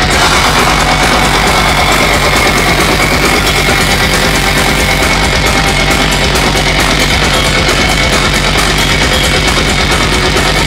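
Melodic death metal band playing live at full volume: heavy distorted electric guitars over driving drums, with rapid fast hits through the second half.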